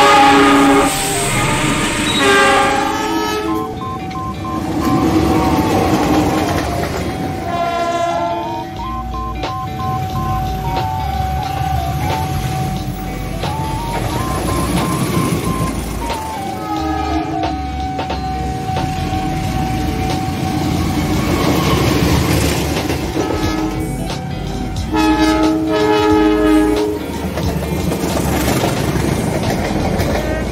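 Diesel locomotive horns of passing KAI trains, several chords sounding about four times (at the start, around 8 s, around 17 s and around 25 s), over the steady rumble of the trains running by. A thin steady high tone that now and then steps up in pitch runs under much of it.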